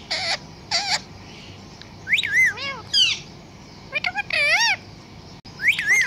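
A pet parrot calling in a string of short, squawky calls and mimicked word-like sounds, each with a wavy, swooping pitch, about six in all with short gaps between.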